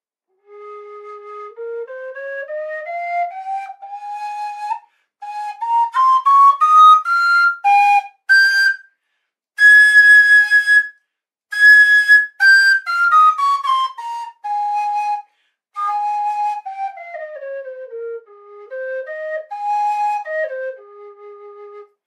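Carbony carbon-fibre tin whistle in A-flat played as a scale: it climbs note by note through two octaves from its bottom A-flat, holds the top notes with short breaks, then steps back down to the bottom note near the end. The high notes, given more breath, are much louder than the low ones.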